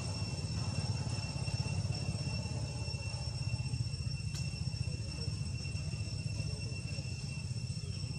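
Outdoor ambience: a steady low rumble under a constant high, even insect drone, with a single sharp click about four seconds in.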